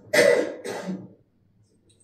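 A person coughing twice in quick succession within the first second, each cough short and sharp.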